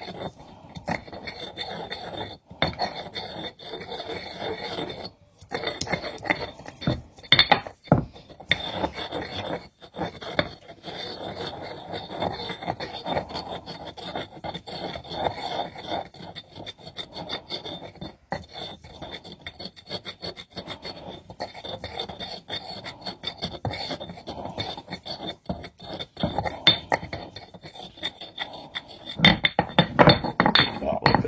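Granite pestle grinding crushed garlic around the inside of a new black granite Cole and Mason mortar: a continuous stone-on-stone scraping rasp as the garlic is worked up the sides to season the stone. A few sharper knocks come about seven to eight seconds in.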